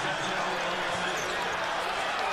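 Steady crowd noise filling a basketball arena.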